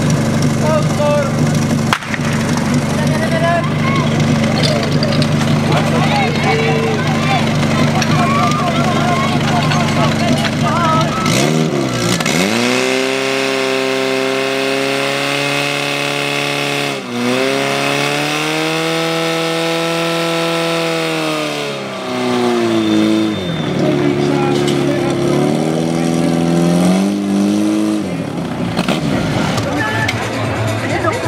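Portable fire pump's engine idling steadily, then revved hard about a third of the way in to a high, screaming run as it pumps water into the attack hoses. It dips briefly and then drops to a lower speed for a while before climbing again near the end.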